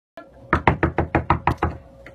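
A quick run of about eight knocks on a door, roughly six a second, starting about half a second in.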